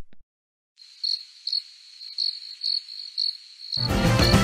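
Music cuts off to a moment of dead silence, then crickets chirp: a high chirp repeated roughly twice a second for about three seconds. Music comes back in near the end.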